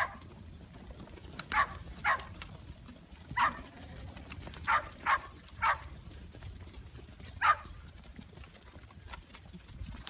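A flock of sheep moving on dirt, with a soft steady shuffle of hooves and about eight short, sharp animal calls spread through it, two and three close together around the middle.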